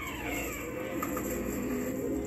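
Low, steady tones of a film soundtrack, several notes held together without a break.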